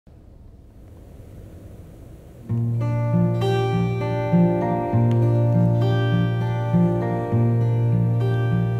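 Acoustic guitar playing a picked intro pattern, starting about two and a half seconds in after faint room noise, with a low bass note that comes back about every two and a half seconds under the higher notes.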